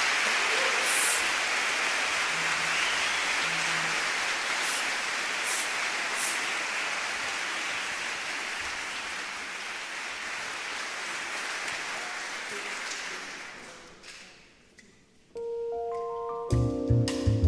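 Concert hall audience applauding, the applause dying away about fourteen seconds in. Near the end a held electric piano chord starts.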